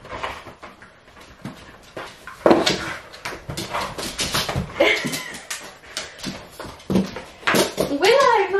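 A dog playing with a rope toy, making short dog sounds and scuffles in irregular bursts. The loudest comes about two and a half seconds in.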